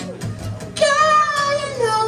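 Acoustic guitar playing under a man singing in a high voice. About a second in he holds one long note that slides down near the end.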